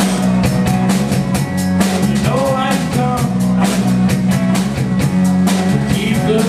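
Live rock band playing an instrumental passage: a drum kit keeping a busy, steady beat over bass, with an electric guitar bending notes.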